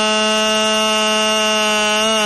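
A man's chanting voice holding one long note at a steady pitch. It is the drawn-out last syllable of a chanted line of Sikh prayer, sung into a microphone.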